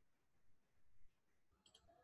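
Near silence: faint room tone, with two short faint clicks close together near the end.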